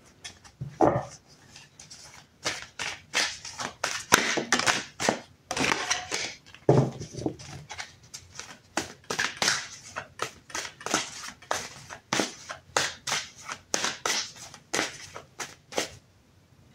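A deck of tarot cards being shuffled by hand: a running series of short card slaps and flutters, two or three a second, at uneven spacing.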